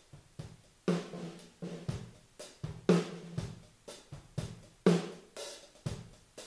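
A recorded drum-kit groove played back over studio monitors through only the two overhead room microphones (AKG C451s) set high above the kit. It sounds distant and roomy and not very wide in stereo, a steady beat with a strong hit about every two seconds and lighter strokes between.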